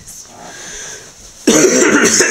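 Faint room noise, then about one and a half seconds in a person abruptly lets out a loud, rough, strained vocal sound, cough-like and croaking: an attempt at producing a note with the voice.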